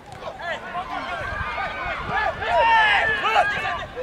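Several voices at a soccer game shouting and calling over one another, growing loudest about two and a half to three and a half seconds in.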